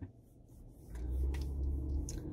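Low rumble of a car heard from inside the cabin, starting about a second in as the car pulls away from a stop.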